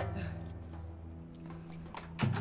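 A bunch of keys jingling and clicking at a door lock, over low held notes of background music.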